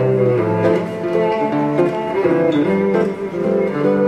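Fingerstyle acoustic guitar and bowed cello playing a duet, the cello holding long notes under the picked guitar.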